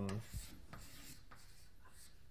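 Chalk writing on a blackboard: a few faint, short scratchy strokes.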